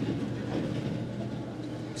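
A steady low hum of background room noise, with no distinct events.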